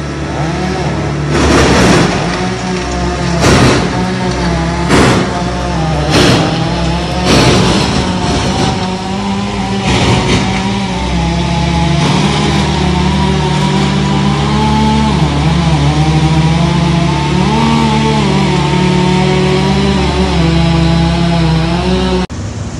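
Crane engine running steadily under load as a cut trunk section is hoisted on the cable, its pitch rising and falling a few times in the second half. Several sharp knocks or cracks sound in the first ten seconds.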